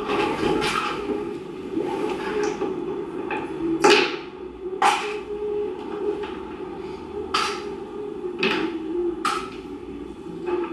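Hard objects knocking and clattering indoors: about six sharp knocks at irregular intervals, the loudest about four seconds in, over a low background murmur.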